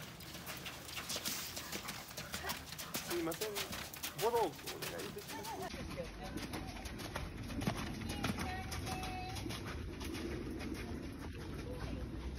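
Hoofbeats of ridden horses on a sand arena, with brief faint voices now and then.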